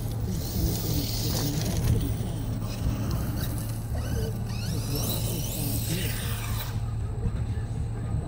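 Arrma Kraton 6S BLX RC truck's brushless electric motor whining and its tyres hissing over gravel, the whine rising in pitch as it speeds up about four to six seconds in, then cutting off suddenly near seven seconds.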